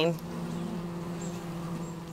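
Honeybee colony humming on the open hive's frames: a steady, low drone with a few overtones above it.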